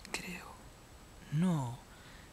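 A man's wordless vocal sounds: a short breathy utterance at the very start, then a brief hummed 'hmm' that rises and falls in pitch about a second and a half in.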